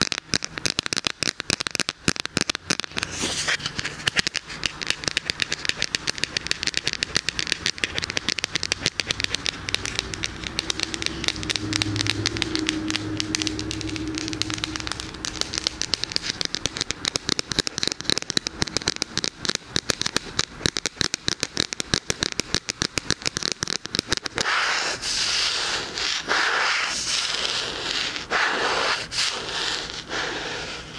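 Rapid fingernail tapping on a thin red plastic light filter held close to a binaural dummy-ear microphone: a dense, fast run of crisp clicks. Near the end it changes for a few seconds to scratching and rubbing on the plastic.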